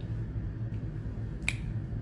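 A single sharp click about one and a half seconds in, over a steady low hum.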